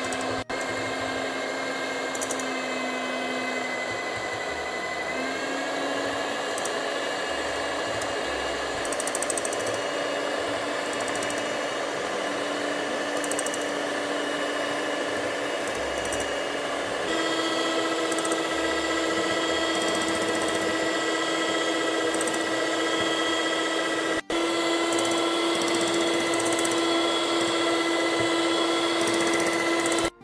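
Electric hand mixer running steadily, its twin beaters whipping eggs and sugar for a sponge batter until the mixture is pale and thick. The motor's whine steps up in pitch about halfway through and breaks off for an instant twice.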